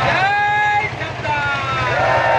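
A single voice chanting in long held and gliding notes, with a steady low hum beneath.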